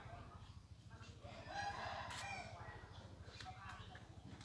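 A rooster crowing faintly: one drawn-out crow lasting about a second and a half, starting about a second in, over a low steady hum.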